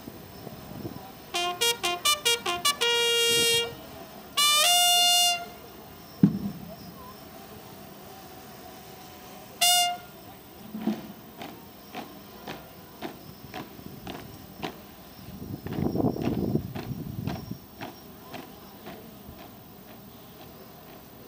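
Military bugle call: a quick run of short notes, then two long held notes at different pitches, and one more short note about ten seconds in. It is followed by scattered sharp knocks and a brief swell of noise.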